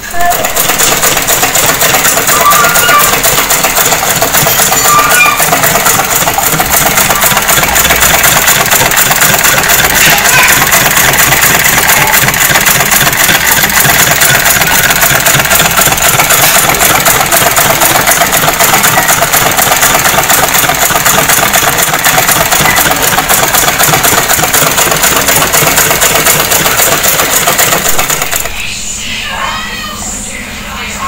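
Sewing machine stitching a shirt collar in one long continuous run at a steady fast speed, stopping abruptly near the end.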